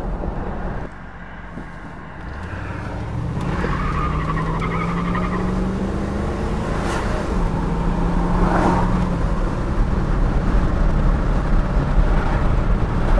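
Inside the cabin of a 1973 Mercury Marquis Brougham on the move: low, steady engine and road rumble, with the engine note rising in pitch as the car picks up speed a few seconds in, then holding steady. The engine stays quiet and smooth.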